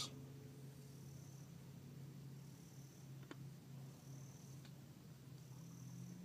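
Near silence: a faint steady low hum of room tone, with two small clicks partway through.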